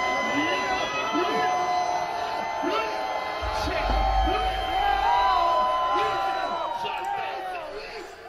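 A large concert crowd cheering and whooping over a hip-hop beat, dying down near the end.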